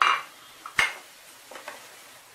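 Wooden spatula stirring and scraping in a frying pan: a scrape at the start, one sharp knock against the pan a little under a second in, then a few lighter taps.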